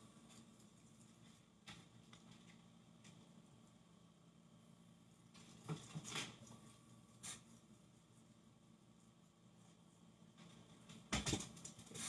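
Near silence: quiet room tone, broken by a few faint, short handling noises and a slightly louder brief rustle near the end.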